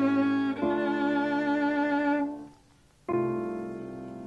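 Violin and piano duo playing: a long violin note with vibrato over piano fades out about two and a half seconds in. After a short pause, a new chord enters sharply and slowly dies away.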